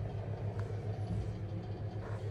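A steady low hum with a faint hiss above it, unchanging throughout.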